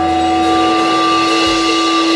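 A sustained chord on electric guitar through the band's amplification, ringing on as a few steady unwavering tones, with a low thump about one and a half seconds in.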